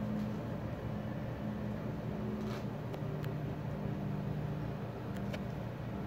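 Domestic cat purring steadily under a stroking hand, with a few faint clicks.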